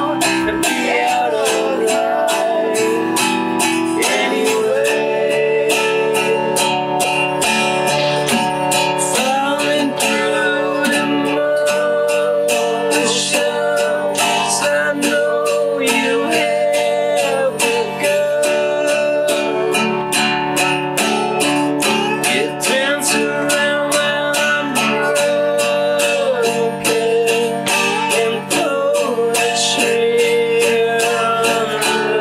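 Live acoustic band: two acoustic guitars strummed in a steady, even rhythm, with a voice singing a melody that glides in pitch over them.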